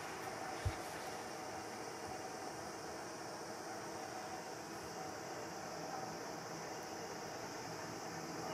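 Steady low hiss of room noise, with one brief low thump a little under a second in.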